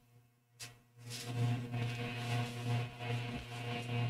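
A low, steady droning tone with overtones comes in about a second in, after a brief click and near silence, and holds without a break.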